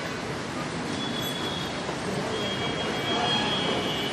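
Steady background noise, an even hiss-and-rumble, with a faint thin high tone that comes in briefly about a second in and again from the middle on.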